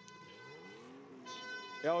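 A vuvuzela blown nearby: a faint, low horn note that bends up and falls back over about a second, over the low running of a drift car's engine as it rolls slowly past.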